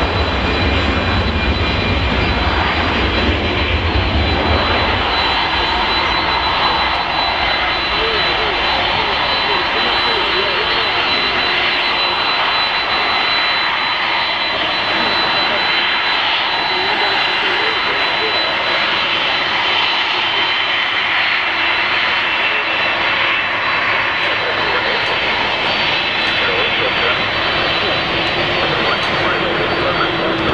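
Jet airliner engine noise: a deep rumble for the first five seconds or so fades out, leaving a steady jet whine as a twin-engine Boeing 767 taxis.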